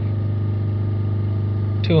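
Land Rover Discovery Sport's four-cylinder diesel engine held steadily at about 3,000 rpm, a constant drone, while its diesel particulate filter is quite blocked and back pressure builds.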